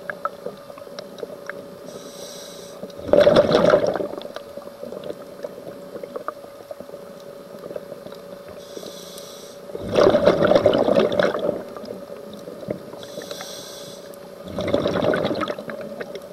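Scuba diver breathing through a regulator underwater: a soft hiss of inhalation, then a loud rush of exhaled bubbles, three times, roughly every five to six seconds, over a steady hum.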